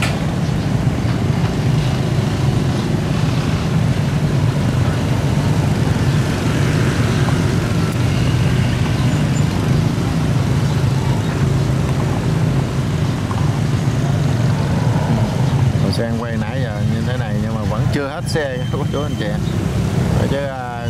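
Steady drone of motorbike and car traffic crossing a pontoon bridge, engines running with a low rumble under it. A voice is heard near the end.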